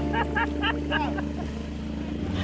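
Small outboard motor running steadily as the boat tows a train of inner tubes, with a quick series of short high calls in the first second.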